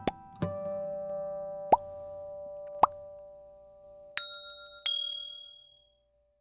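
Short outro jingle of ringing synth notes and sound effects: a few quick plucks, two fast rising blips, then two bright chimes that ring out.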